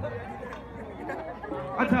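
Audience chatter in a large concert crowd, several voices overlapping, with a man's voice over the sound system coming in near the end.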